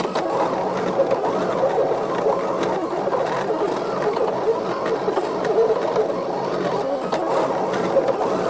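Desktop vinyl cutting machine cutting a printed sticker sheet: its carriage and feed motors whir steadily as the blade holder tracks back and forth.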